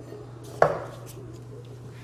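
A single sharp knock about half a second in, as a metal wheel guard is handled against the gear head of a Bosch GWX 125 S X-LOCK angle grinder, with a brief ring after it.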